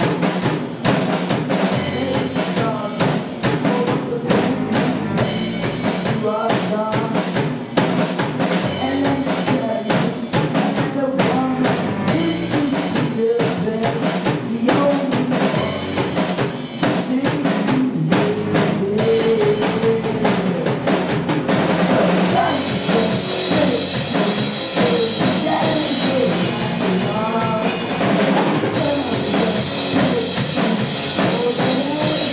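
Live rock band playing: a drum kit with bass drum and snare keeps a steady beat under electric guitar and bass guitar. The cymbals grow brighter about two-thirds of the way through.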